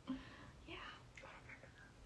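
Quiet speech: a soft, brief "yeah" and faint voice sounds over low room tone.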